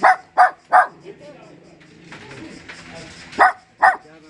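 A small puppy barking: five short, high barks, three in quick succession at the start and two more near the end.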